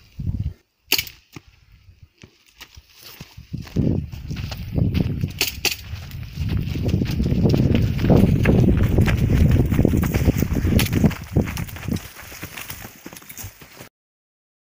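A few sharp cracks about a second in, then people running on loose gravel: a dense low rumble of movement and handling noise on the handheld camera, with many crunching steps, loudest in the middle and thinning out near the end.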